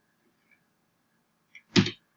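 Near silence, broken near the end by one brief, loud vocal sound from the narrator at the microphone, just before he speaks again.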